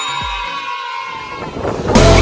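A horn-like chord of several steady tones held under a channel subscribe graphic, sagging slightly in pitch and fading, after a click at the start.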